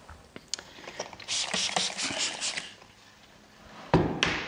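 Hand-pump water spray bottle spritzing in a quick run of pumps for about a second and a half, with a few small clicks before it and a sharp knock near the end.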